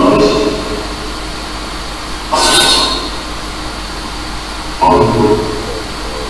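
Afterlight Box ghost-box software playing its sweep of chopped, echoing sound fragments over a steady hiss, with two short louder bursts about two and a half and five seconds in.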